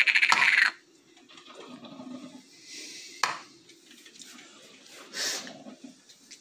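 Small plastic pill bottles handled and set down on a kitchen counter: a rattle at the start, a single sharp click about three seconds in, and a short scuff near the end, with faint handling noise between.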